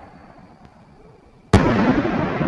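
Aerial canister firework shell bursting overhead: after a quiet stretch while it climbs, a single sharp bang about one and a half seconds in, with a long rumbling echo trailing off after it.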